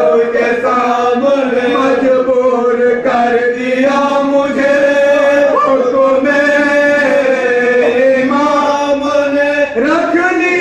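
Men chanting a marsiya, an Urdu elegy for Imam Husain, in long drawn-out held notes that glide from one pitch to the next.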